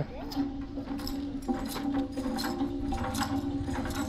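A deep-well hand pump being worked by its long handle, its mechanism clicking and clanking in a quick repeating rhythm over a steady hum.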